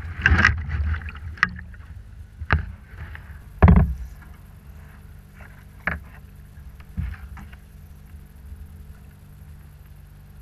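Knocks and bumps on a fishing kayak's hull as the angler shifts his weight and moves around in it, carried straight to the boat-mounted camera: about six separate knocks, the loudest about four seconds in, over a steady low rumble.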